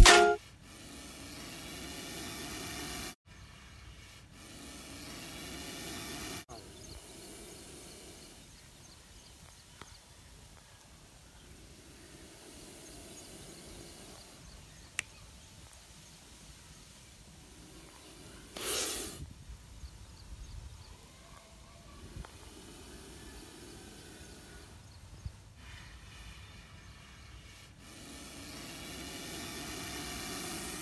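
Quiet outdoor ambience with slowly swelling and fading noise. Just past the middle comes one short, sharp hiss, typical of a cobra hissing as it is handled at its basket.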